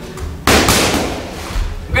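Boxing glove punches landing on a trainer's punch mitt: one sharp smack about half a second in, followed by a few lighter hits.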